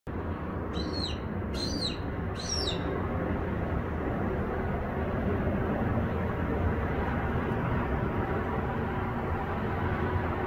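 A bird calls three times in quick succession in the first three seconds: short, high, arched calls, each about half a second long. Under them runs a steady low rumble.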